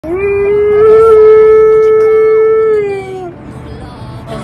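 Husky howling: one long, loud howl that rises at the start, holds a steady pitch, then falls away and ends a little past three seconds in.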